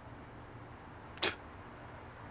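A person spitting once: a short, sharp burst a little over a second in, over a faint steady outdoor background.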